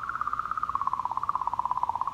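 Sonified recording of comet 67P's 'singing' from ESA's Rosetta spacecraft: magnetic-field oscillations around the comet, sped up into hearing range. It is a rapid pulsing, clicking tone that wavers slightly in pitch and almost sounds like frogs.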